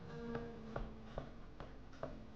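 Chef's knife slicing mango into thin strips, the blade knocking on a wooden cutting board about five times, two or three knocks a second. Faint background music plays under it.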